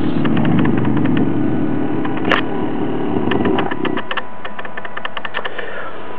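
A small homemade Newman motor, a permanent-magnet rotor in a hand-wound coil, free-running fast with no load on about 4 volts, giving a steady hum with rapid clicking. The lower hum drops away a little before four seconds in, leaving a fainter buzz and clicks.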